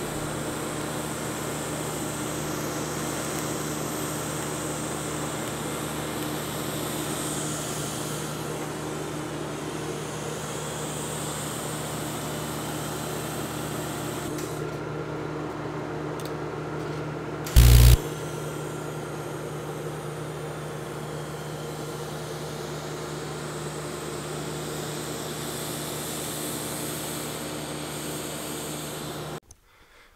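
Steady buzzing hum and hiss of TIG welding on stainless steel tubing, with one short, loud thump a little past halfway.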